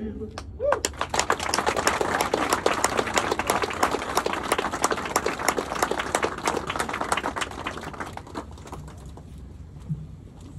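Audience applauding with many hands clapping at once. The clapping starts within the first second and dies away over the last two seconds.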